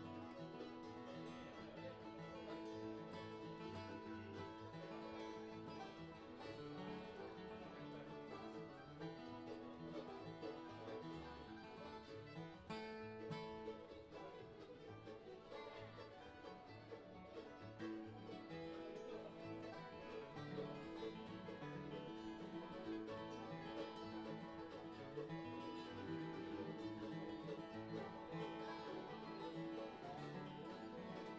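Bluegrass played on flatpicked acoustic flat-top guitars, the lead guitar picked with down strokes, with a fiddle playing along.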